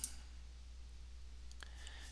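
A single faint computer mouse click about one and a half seconds in, over a low steady hum.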